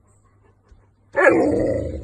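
A husky gives one loud, drawn-out bark-like call about a second in, starting suddenly and fading away over about a second.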